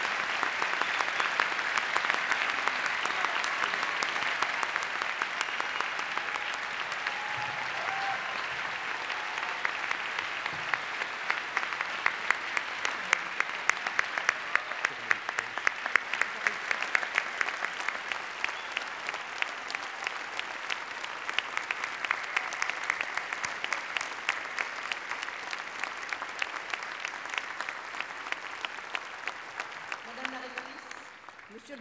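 Large audience applauding at length, a dense wash of clapping that slowly thins, with separate claps standing out more in the second half.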